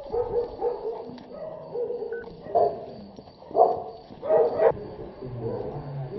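A dog barking, with a run of loud, sharp barks about halfway through.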